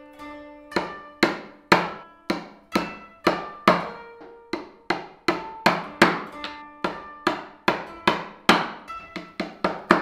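Steel-headed hammer striking the handle of a bench chisel in a steady series of sharp blows, about two a second and quickening slightly near the end, as the chisel chops into a hardwood board. Plucked-string music plays underneath.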